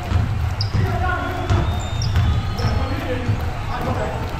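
Basketball bounces and players' running footfalls thudding on a hardwood gym floor during pickup play, with a few short, high sneaker squeaks.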